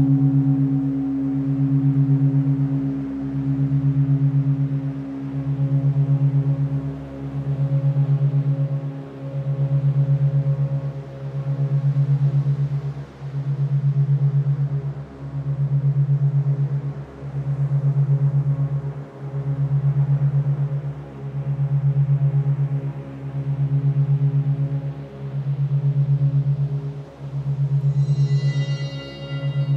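Monaural-beat meditation drone: a low steady tone on a 136.1 Hz base, beating at 8 Hz, that swells and dips about every two seconds, with fainter higher tones held above it.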